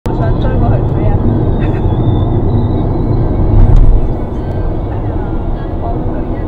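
Car cabin driving noise recorded by a dashcam: a steady low rumble of engine and tyres on the road, louder for a moment about three and a half seconds in.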